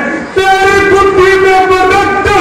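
A man's amplified voice holding one long, steady, loud note, a drawn-out declaimed syllable from a stage actor, starting about a third of a second in after a brief dip.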